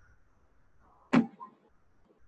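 Near silence broken by a single short, sharp tap a little past a second in.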